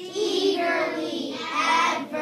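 A class of children singing a grammar jingle together in unison, their voices held and sustained.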